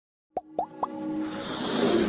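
Logo-intro sound effects: three quick plops about a quarter second apart, then a whooshing swell that builds in loudness over a held musical tone.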